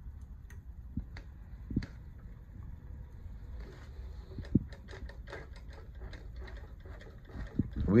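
Light clicks and a run of quick ticks, about five a second, from the mechanism of a New-Tech GC-8810 post-bed lockstitch industrial sewing machine, its handwheel turned by hand while fabric is drawn out from under the presser foot. The motor is not running.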